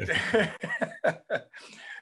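A man laughing briefly in a few short bursts, about four a second, fading out near the end.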